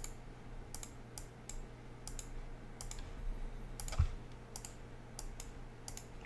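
Computer keyboard and mouse clicks: about a dozen sharp, irregularly spaced clicks while a lineup-optimiser dialog is worked, with a faint low hum beneath and one dull thump about four seconds in.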